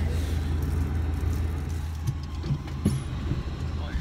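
Car engine running with a steady low hum, heard from inside the cabin, with a few light knocks about two and a half to three seconds in.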